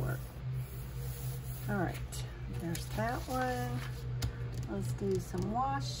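A woman's voice, quiet and without clear words, in three short phrases, one with a held note. Under it runs a steady low electrical hum, with a few faint ticks of paper being handled.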